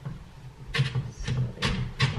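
Knife chopping onion on a cutting board: a run of quick, even strokes, about two or three a second, beginning about two-thirds of a second in.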